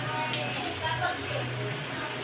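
A metal spoon clinking against a stainless steel bowl while scooping thick ube mixture, a few light metallic clinks with a brief ring in the first second.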